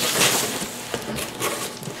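Cardboard shipping box being handled and tipped, cardboard rubbing and rustling against cardboard, louder in the first half second and then softer.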